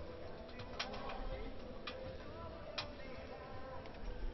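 Sports-hall room noise with three sharp smacks about a second apart, and a few faint high squeaks.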